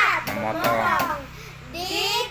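Young girls' voices chanting English irregular verb forms, 'cut, cut, cut', with a short pause before the next line begins near the end.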